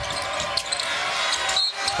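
Basketball bouncing on a hardwood court, a few short knocks, over steady arena crowd noise.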